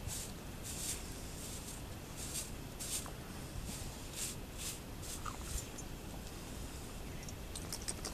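Stiff corn-broom bristles swishing in short strokes over a horse's coat, sweeping sand off it, about one to two strokes a second, over a steady low rumble.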